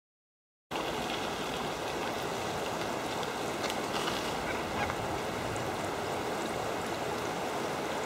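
Steady rushing of a fast-flowing river, cutting in less than a second in.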